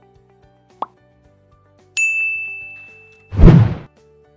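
Subscribe-button animation sound effects over faint background music: a short pop about a second in, a bright ding at two seconds that rings away over about a second, then a short rushing whoosh near the end.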